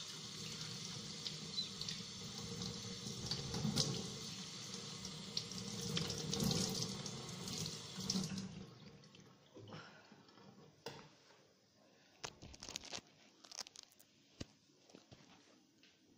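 Kitchen tap running into a sink as water is splashed on the face to wash off makeup. The water stops about eight and a half seconds in, and a few faint knocks and splashes follow.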